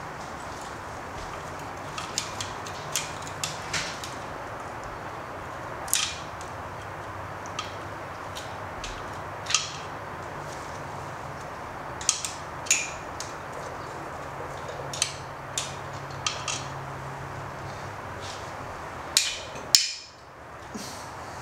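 Irregular single metallic clicks and clinks from a ratchet and long extension working a bolt deep inside an engine, over a steady low hum.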